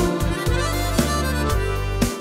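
Instrumental fill in a schlager song: a harmonica plays held notes over a steady bass line and a light beat, between sung lines.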